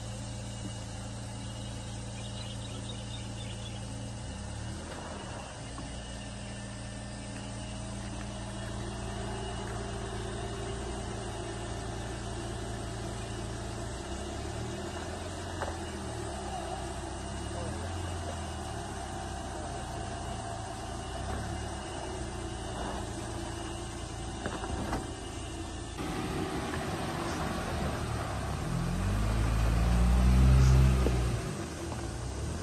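Off-road SUV engine idling steadily, with the engine note shifting up and down as the vehicle works on a steep dirt slope. Near the end, a louder, deeper engine rumble builds as a vehicle climbs.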